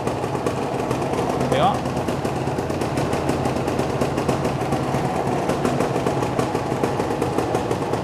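Yamaha TZM 150 single-cylinder two-stroke engine idling steadily with a fast, even beat, freshly restored and running healthy by the owner's account.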